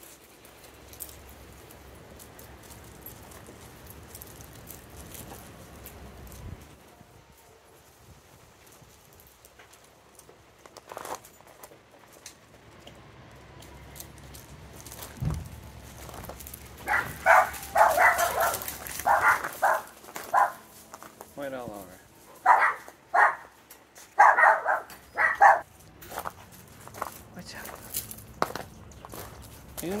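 A dog barking, about a dozen short loud barks in two runs in the second half.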